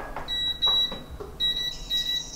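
Two long, high-pitched electronic beeps from a piezo buzzer, the second starting a little before halfway through.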